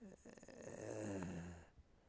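A man's long, raspy breath with a low, wavering hum of voice running through it, lasting about a second and a half.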